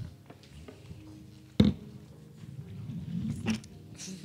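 Handheld microphone being handled and passed between speakers: a single sharp knock about one and a half seconds in and a few smaller clicks, over faint room murmur.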